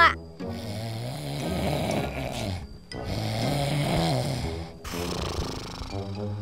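A man snoring loudly while asleep: three long snores of about two seconds each, one after another with short breaks between.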